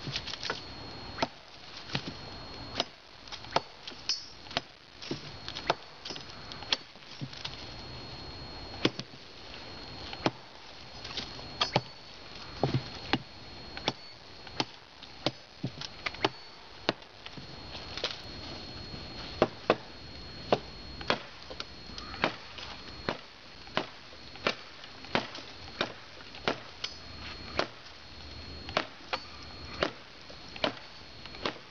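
Gerber Gator machete chopping into a dead log: the blade strikes the wood again and again, about one or two hits a second.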